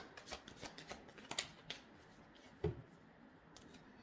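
A tarot deck being shuffled by hand: a scatter of light card flicks and snaps, with a soft thump about two and a half seconds in.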